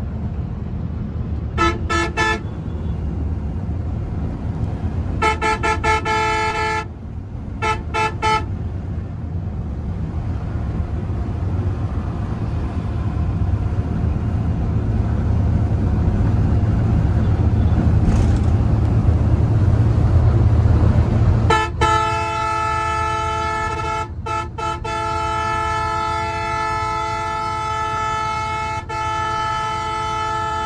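A Volvo multi-axle coach's horn sounds in short toots over the engine and road noise in the driver's cab. About two-thirds of the way through it is held almost continuously to the end, broken twice briefly. The engine and road rumble grows louder before the long honk.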